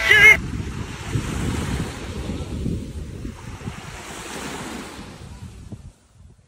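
A sung music phrase breaks off about half a second in, leaving sea waves washing onto the beach with wind on the microphone, slowly fading away.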